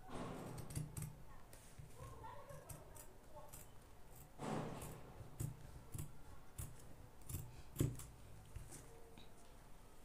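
Scissors cutting through stretchy velvet fabric: a run of faint, irregular snips, with fabric rustling near the start and again about halfway through.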